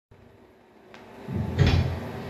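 Handling noise from the recording device being set up: a faint click about a second in, then a heavier bump with a low rumble near the end.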